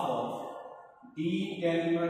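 A man's voice drawing out long, level-pitched vowels in a chant-like drone rather than clear words. It fades out in the first second and resumes with held tones partway through.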